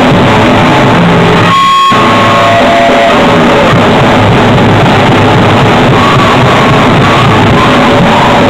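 Live rock band playing loud: distorted electric guitar through an amplifier and a drum kit, the recording so loud it is close to clipping throughout. About one and a half seconds in, the drums and low end drop out briefly under a held guitar note before the band comes back in.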